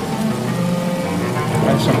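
Contemporary chamber ensemble playing long held notes, with a gliding low line, over a steady hissing noise. A man's voice comes in with a word near the end.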